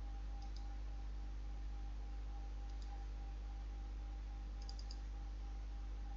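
A few faint computer mouse button clicks: a pair about half a second in, one near three seconds, and a quick run of about four near five seconds. They sit over a steady low electrical hum.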